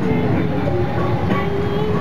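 A steady low rumble with a baby's long, wavering vocal sound held over it.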